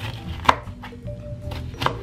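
Kitchen knife slicing a scotch bonnet pepper on a plastic cutting board: two sharp knocks of the blade on the board about a second and a half apart, with lighter cuts between.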